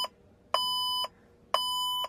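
Electronic warning beeper sounding a steady half-second beep once a second, twice in these two seconds. It is the seeding control system's alarm for an unresponsive tank load cell controller.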